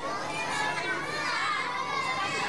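Many young children's voices at once, a fairly faint jumble of high-pitched chatter and calling with no single clear voice.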